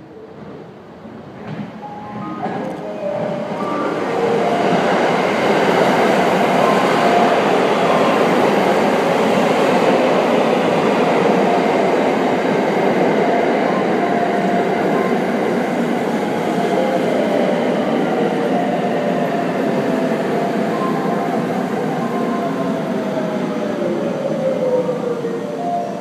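A Thunderbird limited express electric multiple unit running into and along a station platform. Its rumble and wheel noise build over the first few seconds and then hold loud and steady as the cars go by. A motor whine falls in pitch over the last several seconds.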